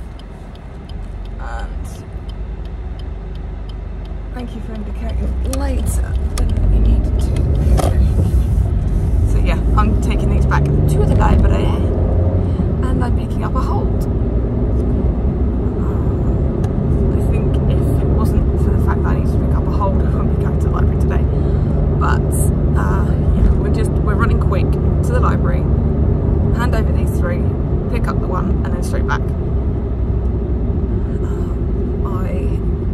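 Car cabin noise: engine and road rumble that grows about five seconds in as the car pulls away and picks up speed, then settles into steady driving, with a low engine hum rising and levelling off. A voice is heard over it.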